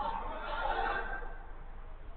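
A man's drawn-out shout across the football pitch, lasting about a second before it fades.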